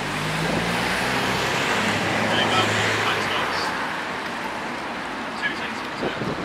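Road traffic passing: a motor vehicle's engine hum and tyre noise that swell over the first few seconds and then fade away.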